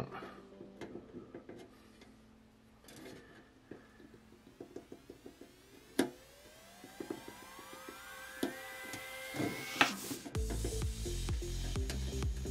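Faint scratching and small clicks of a hobby knife tip and fingernail picking at the edge of a painter's tape mask on a painted plastic tissue box cover. Background music comes in over it, with a rising tone from about halfway and a steady bass near the end.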